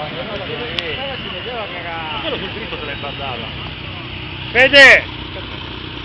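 Bystanders' voices talking over a steady low hum of car engine noise. About four and a half seconds in comes one short, loud vocal outburst close to the microphone.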